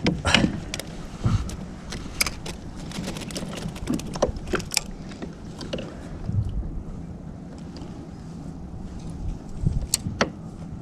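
Fishing gear being handled in a plastic kayak: scattered clicks and knocks of the landing net and rod against the hull. They come thick in the first half, ease off, then a louder knock comes near the end.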